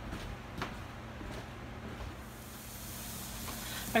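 Ground sausage beginning to sizzle faintly in a hot wok on a gas burner, the hiss building from about halfway in, with a few faint knocks.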